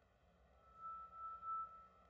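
A faint, steady high-pitched tone lasting about a second, over low background hiss.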